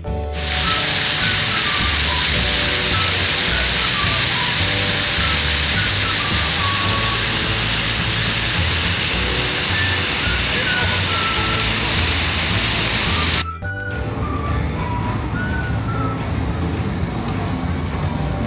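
Fountain water jets splashing, a steady hiss, with music underneath. About thirteen seconds in it cuts suddenly to a quieter outdoor ambience.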